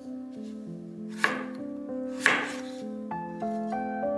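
Chef's knife chopping through small potatoes onto a wooden cutting board: two sharp chops about a second apart, over steady background music.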